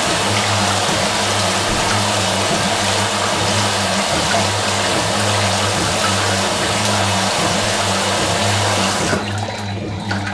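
Fisher & Paykel MW512 top-loading washing machine agitating while water pours into the tub from the inlet, a steady rushing over the low hum of the motor. The pouring cuts off about nine seconds in, leaving the hum and the slosh of the agitating load.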